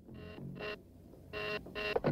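Electronic beeps, two short double beeps about a second apart, each a pitched tone with several overtones, over a faint low hum.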